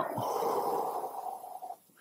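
A man breathing out slowly through the mouth in a controlled deep breath: one long, audible exhale of nearly two seconds that fades at the end.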